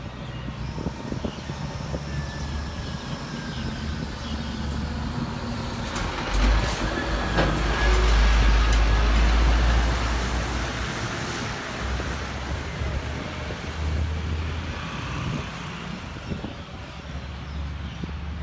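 A flatbed crane truck driving past close by: its engine rumble builds to a peak about halfway through, then fades.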